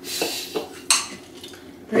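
Chopsticks clinking against ceramic rice bowls and plates at a meal: a brief hiss at the start, then one sharp click about a second in.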